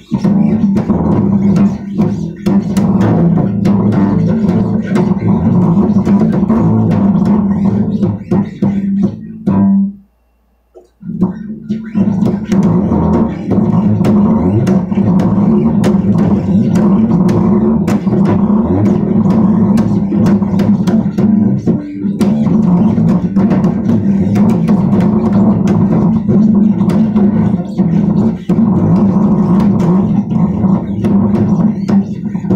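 Bass guitar being played, a steady low line with sharp clicks running through it; the playing breaks off for about a second around ten seconds in, then resumes.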